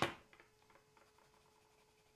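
A sharp tap at the start, then faint scratching strokes of a Faber-Castell Polychromos coloured pencil on paper, over a faint steady hum.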